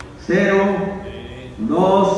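A man's voice in long, drawn-out, steady-pitched phrases, chant-like, one about every second and a half.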